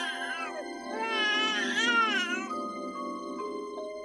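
A newborn baby crying in two wavering wails, the first trailing off just after the start and the second lasting about a second and a half, over soft sustained background music.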